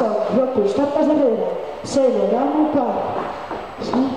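Speech only: a woman calling out line-dance counts ("ten, ten, ten") into a handheld microphone.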